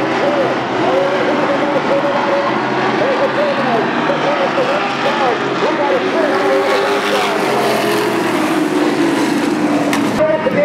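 Racing trucks' engines running around a short oval, a dense steady drone with many engine notes rising and falling in pitch as trucks pass, with a voice mixed in.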